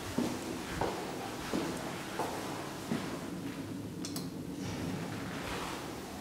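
Footsteps on a hard corridor floor at a walking pace, about one step every 0.7 seconds, growing softer after about three seconds, with a short burst of high clicks about four seconds in.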